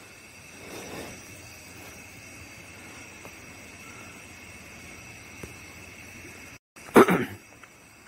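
Night insects chirring steadily and faintly, high-pitched, under a low hiss. About six and a half seconds in the sound cuts out for a moment, then a short loud burst follows.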